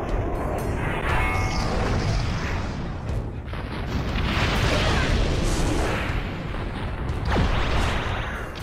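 Cutscene sound effects of a giant energy-sword slash cleaving mountains: a continuous heavy rumble of booms and crashing blasts, with music underneath.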